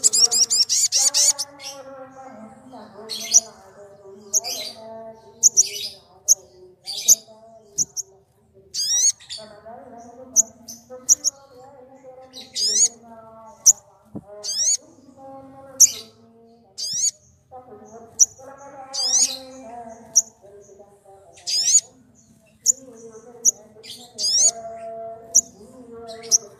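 Sunbirds calling: sharp high chirps and quick rising notes in short bursts about every second, opening with a fast twittering trill. Under them runs a lower, wavering, voice-like sound.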